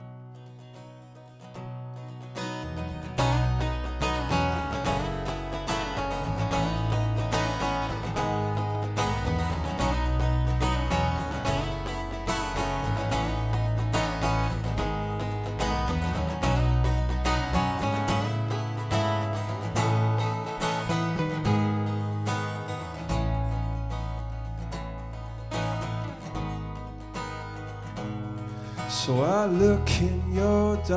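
Live acoustic band playing a song's opening on strummed acoustic guitar. Low bass notes join about two and a half seconds in, and a voice starts singing near the end.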